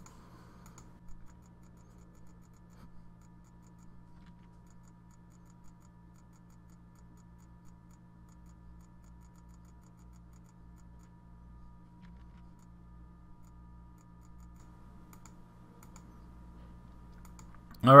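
Faint, scattered computer mouse clicks over a steady low electrical hum with a thin, faint high tone.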